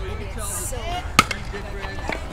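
A single sharp ping of an aluminium baseball bat hitting the ball, about a second in.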